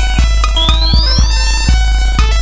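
Eurorack modular synthesizer playing electronic music: a steady deep bass under sharp percussive hits about two a second, with a cluster of high tones sweeping up in pitch from about half a second in.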